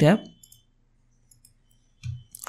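A man finishes a word, then a few faint computer mouse clicks come about a second and a half in, against quiet room tone.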